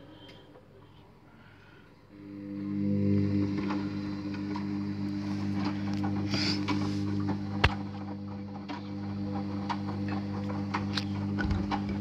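Front-loading washing machine mid-wash. About two seconds in, its motor starts turning the drum again with a steady hum, and scattered clicks and knocks come from the drum and the wash load.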